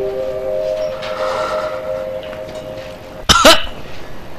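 Soft background score of long held notes. About three seconds in comes a short, loud vocal outburst.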